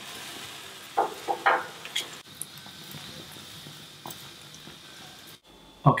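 Pork ribs sizzling on a gas grill with a steady hiss, with metal tongs clattering against the grate a few times about a second in. The sizzle cuts off abruptly near the end.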